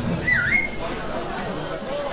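A single human whistle from the crowd, dipping in pitch and rising again before it holds briefly, over crowd chatter.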